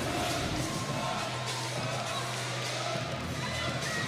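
Steady crowd noise in a large indoor arena, a mix of many voices, with faint music underneath.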